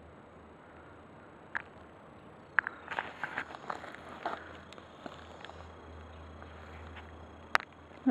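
Footsteps and rustling on dry twigs and leaf litter: scattered light crackles, a busier patch of crunching a few seconds in, and one sharp snap near the end.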